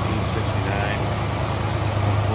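1969 Cadillac 472 cubic-inch V8 idling smoothly, a steady low hum.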